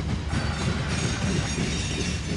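Freight train of covered hopper cars rolling past, a steady rumble of wheels on the rails.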